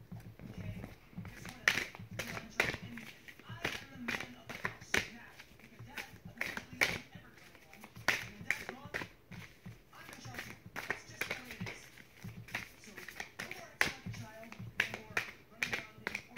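A deck of tarot cards shuffled by hand, overhand, the cards slapping and snapping against each other in a run of sharp, irregular clicks, about two a second.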